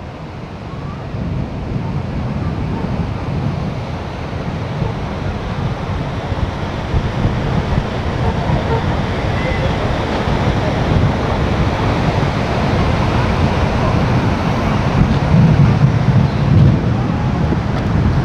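Sea surf washing on the beach together with wind buffeting the microphone: a steady rushing noise, heaviest in the low end, that grows slowly louder.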